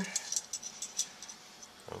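Metal kitchen tongs clicking lightly a few times while coleslaw is served onto a bun.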